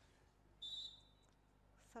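A referee's whistle: one short, high blast about half a second in, the signal for the serve. The rest is near-silent crowd and court ambience.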